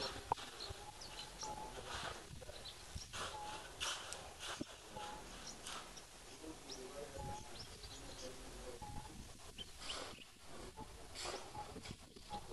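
Short animal calls: a brief note repeated about every second or so, with sharper chirps among them.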